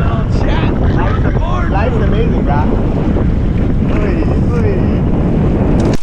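Heavy wind noise buffeting an action-camera microphone while kitefoiling over open water, with men whooping and shouting excitedly over it.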